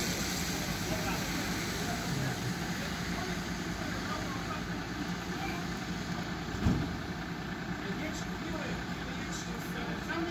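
Fire engines idling with a steady low hum, with faint voices in the background and a single sharp thump about two-thirds of the way through.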